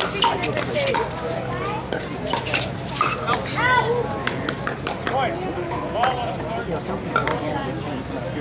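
Sharp pops of pickleball paddles striking a hard plastic ball, coming irregularly throughout as a doubles rally is played and hits carry from neighbouring courts. People's voices chatter in between.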